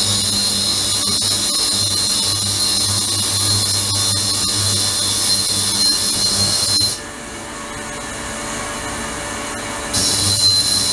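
Ultrasonic transducer running in a water tank: a steady high hiss with a thin whine and a low hum. It switches on sharply and cuts off abruptly about seven seconds in, as the control box turns the ultrasonic output on and off in timed cycles.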